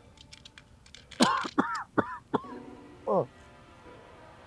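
A man's short wordless vocal sounds, a few brief murmurs with pitch rising and falling, about a second in and again near three seconds. Soft background music plays under them, with a few light clicks in the first second.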